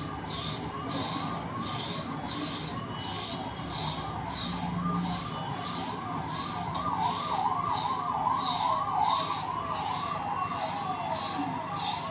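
An electronic siren wailing up and down about twice a second, steady and unbroken, over a faint hiss.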